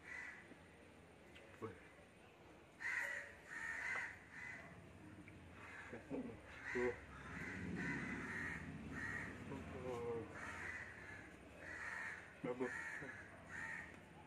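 Crows cawing over and over, harsh calls of about half a second each coming one to two a second throughout, with a few short vocal 'oh' sounds among them.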